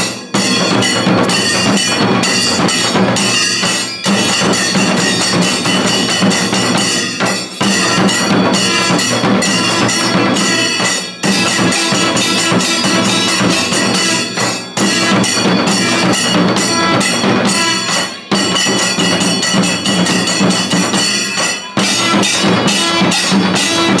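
Kailaya vathiyam temple percussion ensemble playing: large tiger-skin-covered barrel drums beaten with sticks together with stick-struck metal cymbals, in a fast, dense, loud rhythm. The beat breaks off briefly about every three and a half seconds and starts straight up again.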